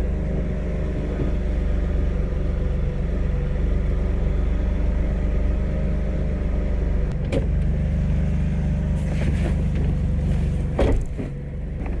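BMW E30's engine idling steadily, with a couple of brief knocks partway through.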